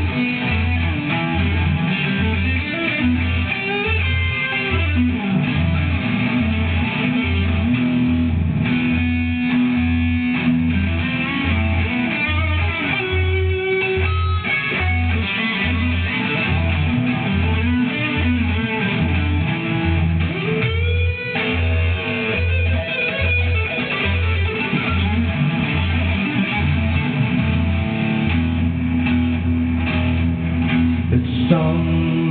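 Electric guitar played through an instrumental passage of a song, over a steady low beat of a little over one pulse a second.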